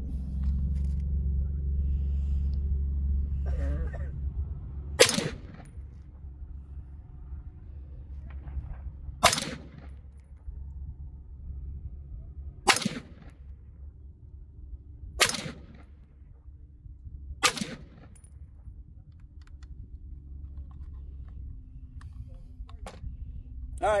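Bear Creek Arsenal AR-pattern rifle in 7.62x39 firing five single shots a few seconds apart, the gaps shortening toward the end. A low steady rumble runs under the first few seconds.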